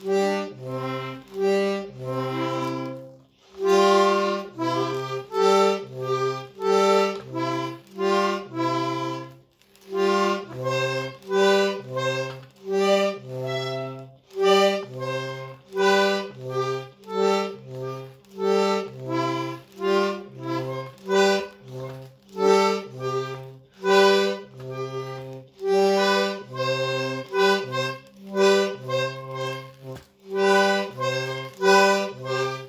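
Small button accordion played by a beginner in short, separate chords at an uneven pace, roughly one to two a second, with brief breaks about 3 and 10 seconds in.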